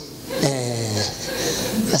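A man's voice holding a drawn-out, slightly falling vowel, then more breathy vocal sounds.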